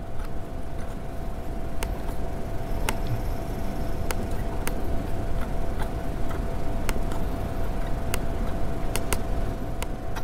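Steady low room hum with a faint constant tone, broken by scattered single clicks from a laptop being used.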